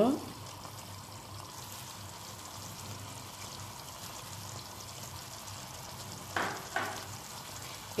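Tomato fish soup simmering in a large aluminium pot, a steady faint crackle and bubble. Two short louder sounds come about six and a half seconds in.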